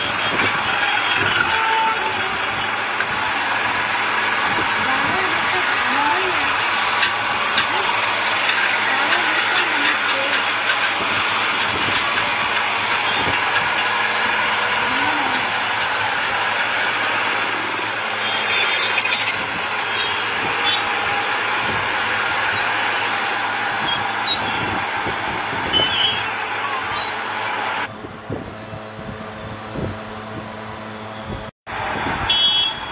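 Heavy diesel trucks running, a steady traffic noise, with people talking in the background; the sound drops suddenly near the end.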